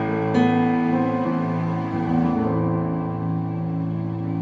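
Roland FP-30X digital piano playing a layered piano-and-strings sound. A chord is struck about a third of a second in, and the strings tone holds steady under the sustain pedal while the piano notes fade.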